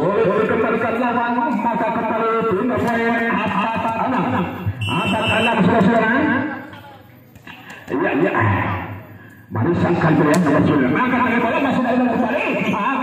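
Speech: a man's voice talking through most of it, dropping away briefly from about seven seconds in and picking up again at about nine and a half.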